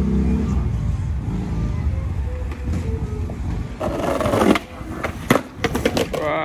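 Skateboard wheels rolling on concrete over a low engine rumble. About four seconds in comes a loud scrape, then near the end several sharp clacks as the board slams the ground in a bail.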